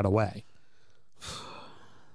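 A spoken question ends, and after a pause a person breathes out once into a close microphone, a short sigh of about half a second, a little over a second in.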